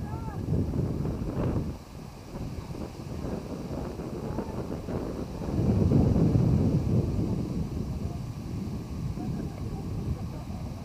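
Wind buffeting the microphone in an uneven low rumble, strongest around the middle, with faint distant voices underneath.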